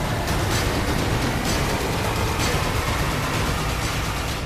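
News programme intro theme music: dense, loud sound-design music with a rushing noise bed and a strong hit about once a second.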